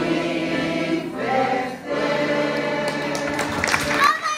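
Women's choir singing, with a short break between phrases about two seconds in. A few sharp clicks come just before the end.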